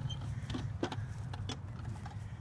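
A steady low engine hum with a few sharp, separate clicks over it.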